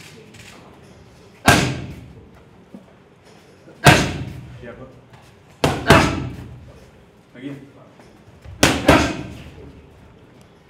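Punches smacking into padded focus mitts: a single loud smack, another about two seconds later, then two quick two-punch combinations, each hit ringing out in the echo of a large gym hall.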